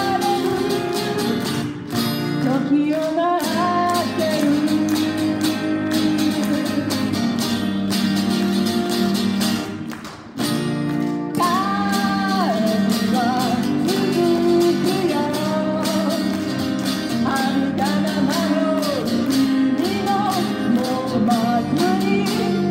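A woman singing into a microphone with acoustic guitar accompaniment, played live. The music drops away briefly about ten seconds in, then picks up again.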